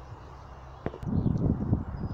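Wind buffeting the microphone, starting about a second in as an irregular low rumble, after a faint stretch with a single click.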